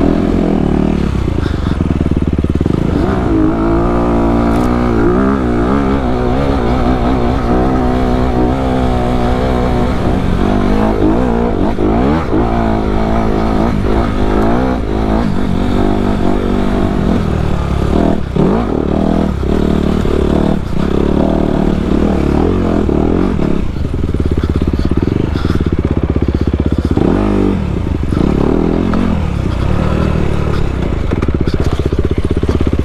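Dirt bike engine heard from the rider's seat, its pitch rising and falling again and again as the throttle is worked over rough trail, with scattered knocks from the bike over rocks.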